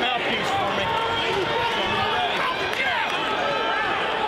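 Several voices shouting over one another from around a fight cage: spectators and cornermen yelling, with no single clear words.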